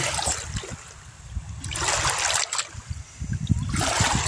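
Shallow river water washing and splashing over rocks, coming in surges about every two seconds over a low rumble.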